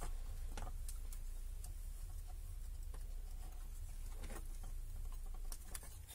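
Faint, scattered clicks and scrapes of fingers handling thin wire, over a low steady hum that drops away near the end.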